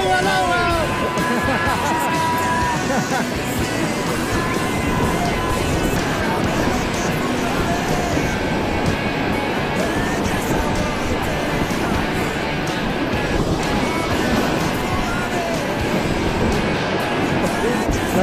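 Whitewater rapids rushing steadily around an inflatable raft, with a few shouts near the start.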